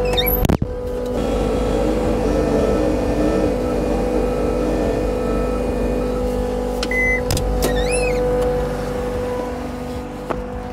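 Compact track loader's diesel engine running at a steady idle, its note wavering briefly about two seconds in. A sharp click comes about half a second in, and a short high beep and a few high chirps come about seven to eight seconds in.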